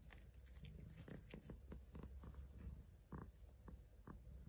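Faint, irregular wet clicks and smacks of a long-haired cat licking and nibbling at its paw while grooming, over a low steady rumble.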